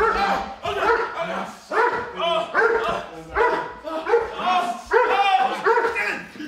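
Police patrol dog barking repeatedly in short bursts.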